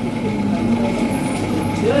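Busy pizzeria background: other people's voices mixed with a steady low hum.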